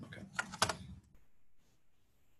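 A few sharp keystrokes on a keyboard, all within the first second.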